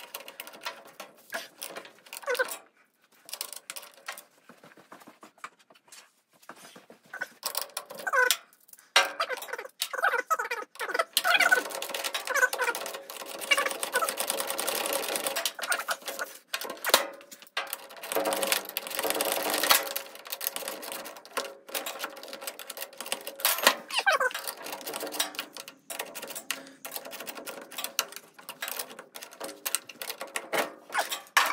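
Crackling of the plastic wrap on a new mini excavator seat, with clicks and rattles of the seat belt and buckle being handled. The crackling thickens for several seconds in the middle.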